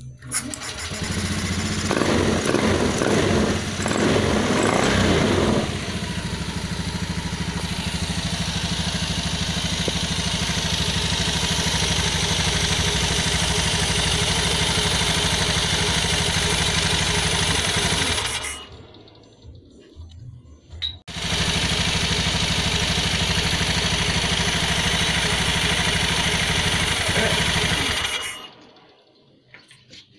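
Honda Beat eSP scooter's 110 cc single-cylinder engine starting, revving briefly and then idling steadily. It cuts out abruptly about two-thirds of the way through, starts again a couple of seconds later and idles until it cuts out again at the end. The stalling is the fault behind blink code 52, which the owner traces to the crankshaft position sensor cable chafing against the crankcase or shorting to the body.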